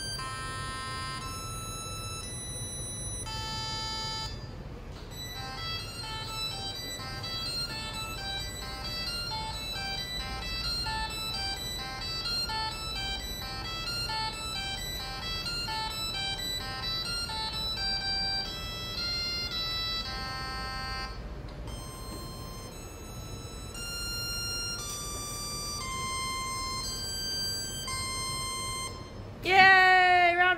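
LEGO Mindstorms EV3 bricks playing a programmed melody through their built-in speakers: plain electronic beep notes one after another, with a quick run of short notes in the middle.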